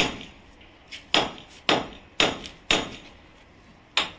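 A hammer striking a steel chisel held against a brick wall, chipping at the brick. Sharp metallic blows, each with a short ringing decay, come about two a second, with one light tap and a pause before a last blow near the end.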